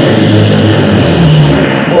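A theatre audience laughing loudly at a gag, one continuous wash of laughter that breaks out just as the line ends and fades as the talking resumes.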